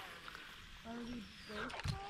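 Quiet cast with a baitcasting rod and reel, the spool giving a faint whir that falls in pitch. A short, faint voice sounds about a second in.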